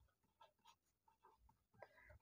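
Near silence, with faint short strokes of a marker pen writing on paper.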